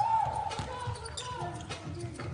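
A basketball being dribbled on a hardwood court, with sneaker squeaks and a voice calling out on the floor.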